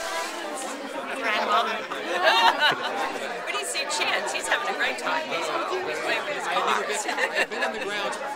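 Chatter of a group of people talking at once, voices overlapping.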